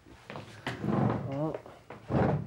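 Indistinct voices with a short knock about two-thirds of a second in. Past the middle comes a wavering, drawn-out vocal sound.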